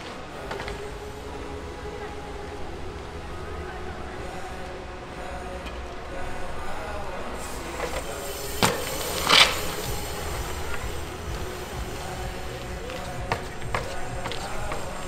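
A bicycle rolling over plaza paving stones, with a sharp knock about eight and a half seconds in and a louder short hiss less than a second after it.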